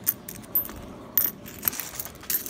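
Nickels clinking against one another as they are handled and pushed about, several short sharp clicks spread through the two seconds.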